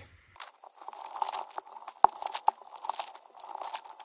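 Foil trading-card pack wrappers crinkling and cards rustling as they are handled and opened: a run of small crackles with one sharp click about halfway through.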